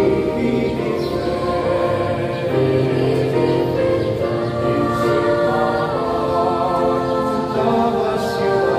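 Small mixed choir of male and female voices singing a slow communion hymn in harmony, holding long chords that change every second or two as they echo the line "really diff'rent, ahh".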